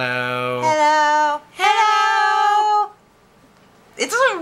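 A woman and a man singing long, held 'hello' notes in turn as a round, the man's low note overlapping hers at the start, then two higher held notes from her with a short break between; the singing stops about a second before the end.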